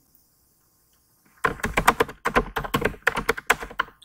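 Fast typing on a computer keyboard: a quick run of keystroke clicks that starts about a second and a half in.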